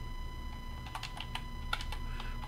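Computer keyboard typing: a slow run of separate key clicks, most of them in the second half.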